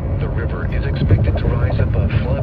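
Speech only: the automated text-to-speech voice of a NOAA Weather Radio broadcast reading a flood statement as heard through a radio receiver, over a steady low rumble.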